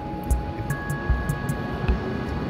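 Lo-fi background music: a steady beat of low thumps about every half second under held keyboard notes.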